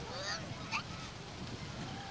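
A baby's faint, brief vocal sounds over a steady outdoor background hiss.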